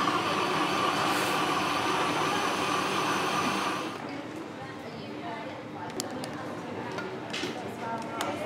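Electric blender liquidising homemade soup to thicken it, its motor running steadily and then stopping suddenly about halfway through.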